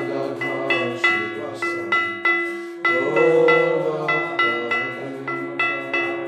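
Devotional kirtan music: brass hand cymbals (karatalas) struck in a steady rhythm about three times a second, each stroke ringing, over a steady held drone.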